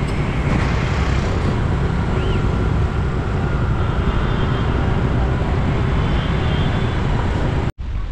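Road traffic heard from a moving bicycle: a steady loud rumble of wind on the microphone mixed with motor scooters and cars. It cuts off abruptly near the end.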